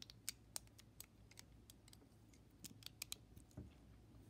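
Plastic LEGO bricks and plates clicking against each other as they are handled and pressed together: faint, sharp little clicks at an irregular pace, with a duller knock near the end.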